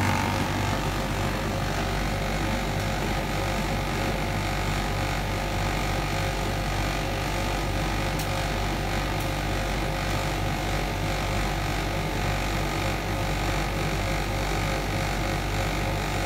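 Bosch Classixx WTL6003GB condenser tumble dryer running: a steady, even hum of its motor and fan.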